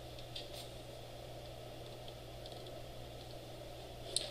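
A few faint computer clicks while code is scrolled, most of them in the first half-second, over a steady low hum of room noise.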